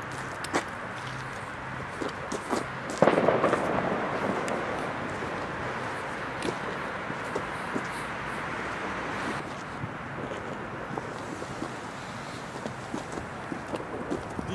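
Firecrackers going off: scattered sharp cracks, with a louder bang about three seconds in followed by a noisy rush that dies away over about six seconds.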